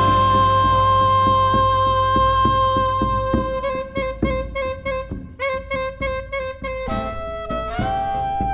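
Argentine folk ensemble playing live: a long held note sounds over the band, and from about halfway short detached strokes come about three times a second. Near the end the held note drops away and the harmony shifts.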